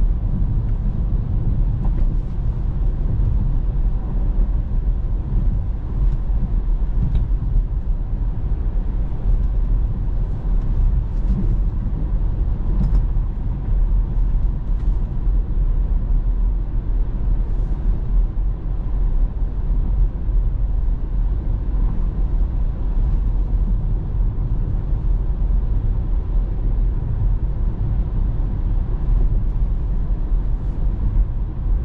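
Steady low road and tyre rumble with wind noise inside the cabin of a Tesla electric car cruising at about 50 mph.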